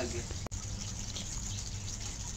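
Steady background hiss with a low rumble, broken by a single sharp click about half a second in.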